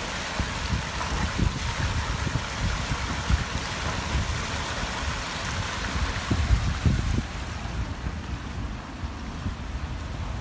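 Open fire at a well burning with a steady rushing sound, with wind gusting on the microphone.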